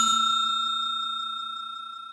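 A bell-like chime sound effect ringing out after its strike and slowly fading, with a faint rapid flutter.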